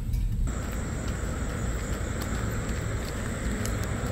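Steady outdoor background noise over a low rumble. It cuts in abruptly about half a second in and then holds evenly.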